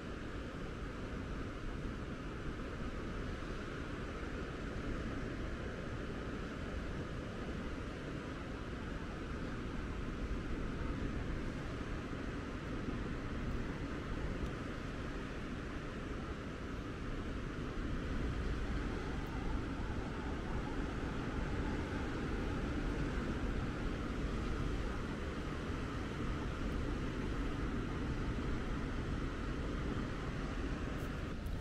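Steady outdoor background noise, an even rushing with no distinct sounds, a little louder in the second half.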